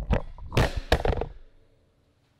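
A run of loud bumps and rustling from a camera being handled and moved, dying away about a second and a half in.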